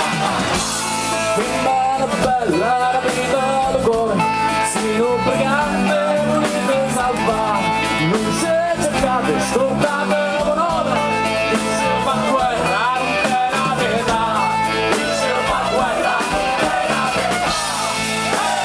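Live folk-rock band playing with strummed acoustic guitar and electric guitar, and a male lead voice singing loudly into the microphone.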